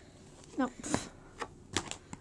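Handling noise: a few sharp clicks and taps spread across the second half, alongside a short spoken 'No. No.'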